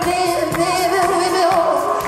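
Live rock band music with a high sung voice holding long notes with a wide, wavering vibrato over electric guitars and drums.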